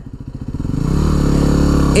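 Yamaha WR250R's 250 cc single-cylinder four-stroke engine pulling at low revs, then opened up from about half a second in: it grows louder and its note rises a little as the bike accelerates.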